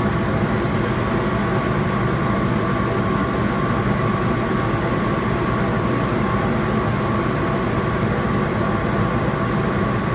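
Steady running noise of a 100-watt CO2 laser cutter and its support machines (exhaust blower, water chiller pump and air compressor) during a cut: a low hum with a steady whine over it. A higher hiss joins about half a second in.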